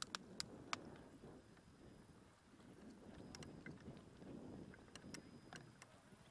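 Faint outdoor sound: a low, uneven rumble of wind on the microphone, with a few scattered sharp clicks.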